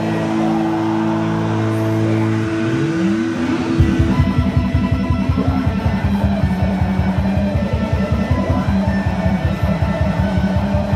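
Live electric guitar over a backing track: held, sustained chords, a rising pitch slide around three seconds in, then a fast, even pulsing beat comes in at about four seconds and the music gets louder.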